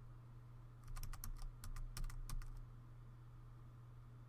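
Computer keyboard keystrokes: a quick run of about a dozen key presses starting about a second in and lasting around a second and a half, over a steady low electrical hum.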